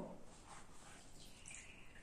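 Very faint liquid sounds of a stack of EVA foam petals being pressed down into a plastic tub of urucum dye and stirred in it.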